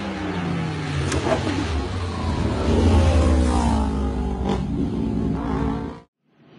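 Two motorcycles approaching and passing at speed, their engines revving. The engine pitch glides down and then up again, and the sound is loudest about three seconds in.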